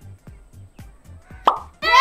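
Background music with a steady beat; about a second and a half in, a short rising plop sound effect. Just before the end, a loud high-pitched shriek of delight from women begins.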